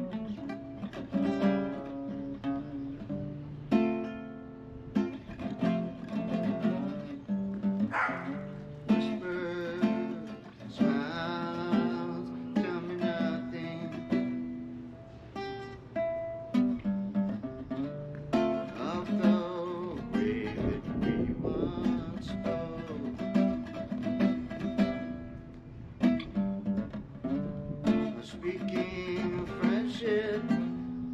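Solo acoustic guitar played with plucked notes and chords, one melodic line changing from note to note.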